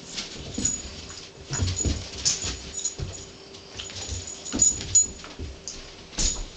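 A dog and a cat play-fighting on carpet: scuffling and bumps of their bodies in irregular bursts, with short noises from the dog. The loudest bursts come around two seconds in and again near five seconds.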